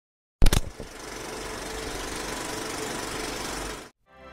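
Film projector sound effect: a loud burst of clicks as it starts, then a fast, steady mechanical clatter that cuts off suddenly near the end.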